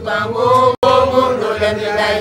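Voices singing a repetitive Ga chant-like song together. The sound cuts out for an instant a little under a second in.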